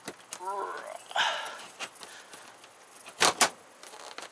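Two sharp metallic clicks a fraction of a second apart, about three seconds in, as the parts of a metal ceiling light fixture are handled and fitted back together. A brief unworded voice sound comes before them.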